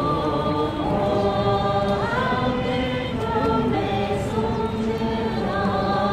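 A crowd of demonstrators singing together, slow and with long held notes.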